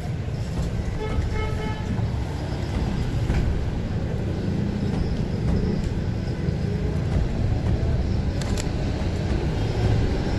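Street traffic ambience: a steady low rumble of motor vehicles, with a short horn toot about a second in. A couple of sharp clicks come near the end.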